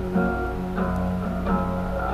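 Instrumental music with no singing: guitar chords struck about every three-quarters of a second, each left to ring, over a steady low hum.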